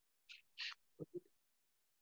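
Near silence, broken by faint murmured speech from a woman: two soft hissing sounds, then two short syllables about a second in.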